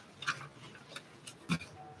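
A few faint clicks or taps in a quiet room, the clearest about a second and a half in.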